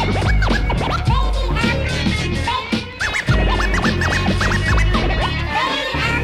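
Hip-hop instrumental break: turntable scratching, with short pitch swoops up and down, cut over a heavy bass beat.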